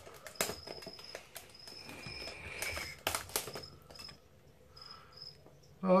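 Packing tape being cut and peeled off a small plastic tub: sharp clicks and crackles of plastic and tape, with a stretch of scraping, peeling noise in the middle, quieting near the end.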